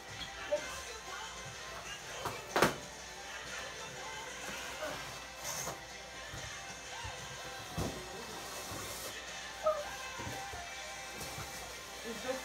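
Faint background music with quiet voices, under the knocks and scraping of a cardboard box being moved and opened; a sharp knock about two and a half seconds in is the loudest sound, with a few softer knocks later.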